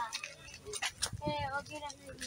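People's voices talking indistinctly, mixed with a few short sharp clicks.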